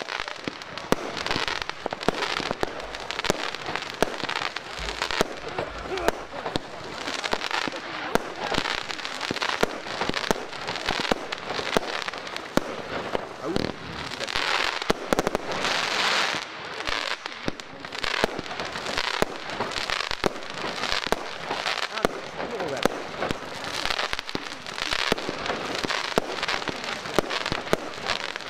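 A 36-shot 25 mm consumer firework battery firing shot after shot: repeated launch thumps and bursts, with dense crackling from gold and silver crackler stars, heard from about 80 m away.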